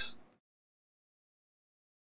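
Silence: the sound track goes completely dead just after the start, once the last spoken word trails off.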